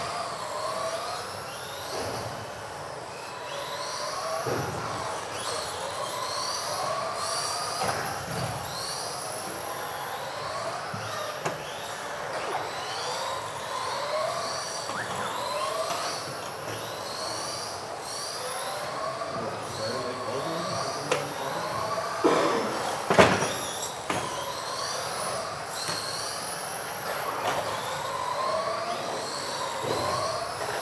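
Several electric radio-controlled model cars racing, their motors whining, each whine rising and falling in pitch over and over as the cars speed up and brake through the corners. A sharp knock about twenty-three seconds in stands out above the whine.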